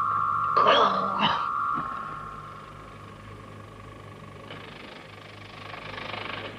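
A steady high-pitched tone over a low hum, loud at first and dropping to a faint level about two seconds in. A man gives a brief exclamation about a second in, and a soft hiss rises near the end.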